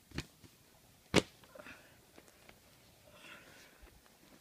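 A few light knocks and rustles of things being handled, with one sharp knock just over a second in and a smaller one near the start.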